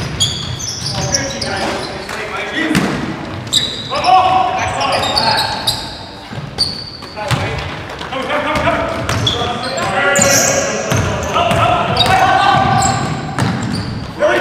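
Live basketball game in a gym: a basketball bouncing on a hardwood floor, sneakers squeaking and players shouting to each other, all echoing in the large hall.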